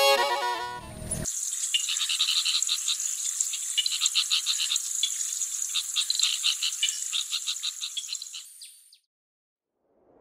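Violin music ends about a second in. It gives way to a high, rapidly pulsing chirring chorus of calling animals, which fades and cuts off shortly before the end.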